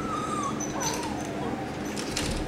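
A small puppy whining in two high, thin whines, the second one falling in pitch.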